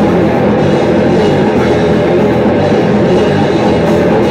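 A live death/thrash metal band playing loud and without pause: distorted electric guitars, bass guitar and a drum kit.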